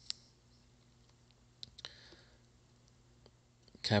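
A few faint, sharp clicks spread through a quiet stretch over a low steady hum, with speech starting near the end.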